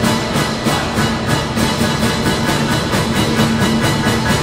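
Symphony orchestra, strings and horns, playing loudly with a steady driving pulse of accented beats about four a second.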